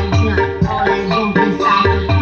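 A song with percussion and melody lines over a regular bass beat, played loud through loudspeakers driven by a homemade tone-control preamp.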